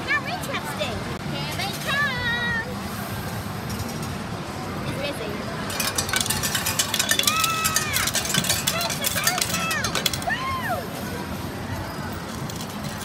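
A coin change machine paying out coins. From about six to ten seconds in, a rapid clatter of coins runs for about four seconds, over background voices and electronic game tones.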